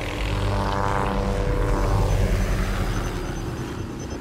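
Logo-intro sound effect: a whirring, propeller-like rumble that swells to a peak about two seconds in and then eases off.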